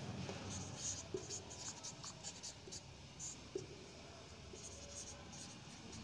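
Marker pen writing on a whiteboard: short, faint strokes and light ticks of the felt tip on the board.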